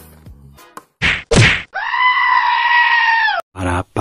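Intro sound effects: two quick whooshes about a second in, then a long, high, bleat-like held tone that dips as it stops. Near the end a mouth-sung jingle ("para paparam") begins.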